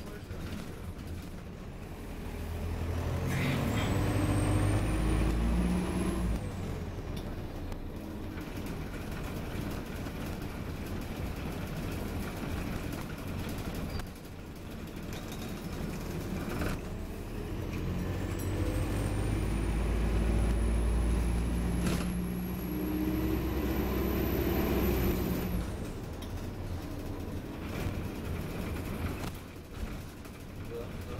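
Optare Versa single-deck bus heard from inside the saloon, with a constant low drivetrain rumble. Twice the bus pulls away or speeds up: the rumble swells and a thin high whine climbs in pitch, about three seconds in and again from about eighteen seconds. The whine cuts off sharply each time, the second after about seven seconds.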